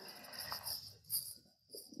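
A short pause in a woman's speech heard through a video-call connection: faint breath and low room noise, with a couple of small mouth or breath sounds and a faint steady high-pitched tone underneath.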